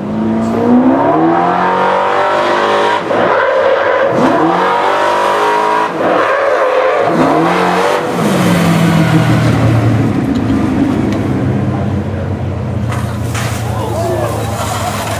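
Engine of a vintage motorized fire-drill truck accelerating hard, its pitch climbing in three runs as it shifts up through the gears. About eight seconds in it settles into a steady high-speed run, as when it is driving the pump that throws water through the hose.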